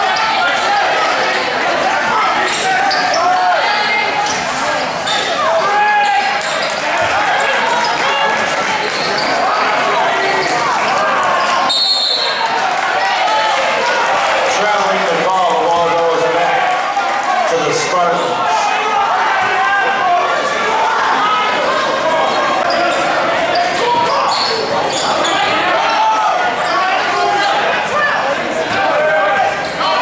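Basketball bouncing on a hardwood gym floor under constant crowd chatter and shouting that echoes in the hall, with a short, high referee's whistle about twelve seconds in.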